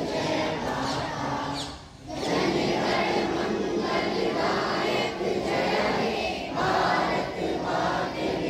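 Many schoolchildren's voices singing together in unison in short, regular phrases, with a brief pause about two seconds in.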